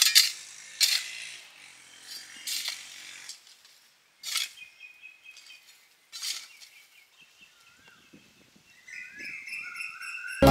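A hand hoe chopping into and dragging dry, crumbly soil, five strikes spaced one to two seconds apart, the first two the loudest. Birds chirp and whistle in the background through the second half.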